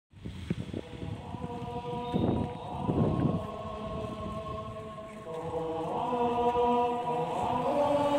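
Voices chanting or singing in long held notes, growing louder in the second half, with two short rushes of noise about two and three seconds in.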